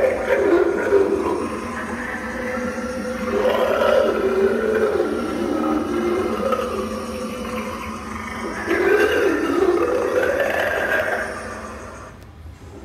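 Spirit Halloween Bog Zombie animatronic playing its sound track through its built-in speaker: drawn-out zombie groans and growls over eerie music, rising and falling in long swells and fading away near the end.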